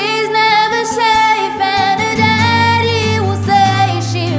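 A woman singing a slow pop ballad, accompanied by acoustic guitar.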